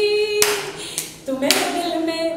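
Three sharp hand claps, about half a second apart, the first and last the loudest.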